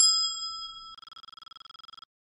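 A bright metallic bell chime struck once, ringing out and fading. About a second in it turns to a fast trembling ring that cuts off suddenly at the end: the notification-bell sound effect of a subscribe animation.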